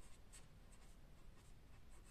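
Faint scratching of a marker pen writing on paper, in several short strokes.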